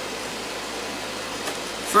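Steady, even background hiss, room tone with no distinct events; a man's voice begins right at the end.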